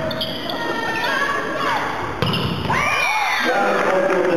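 A volleyball struck in a reverberant sports hall, with a sharp hit about two seconds in, amid players' shouts; near the end the voices turn to steady cheering as the rally ends.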